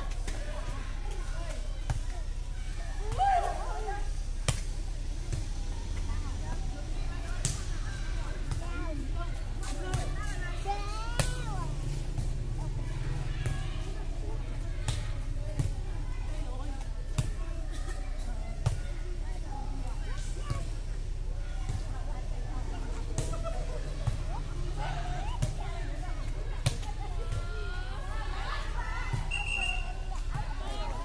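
Sharp slaps of a light inflatable air-volleyball ball being struck by hands, coming irregularly throughout a rally, with players' brief shouts and calls and a steady low rumble underneath.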